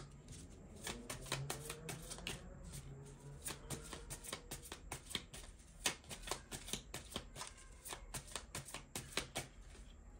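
A tarot deck being shuffled by hand: a quick, irregular patter of card clicks, over a low steady hum.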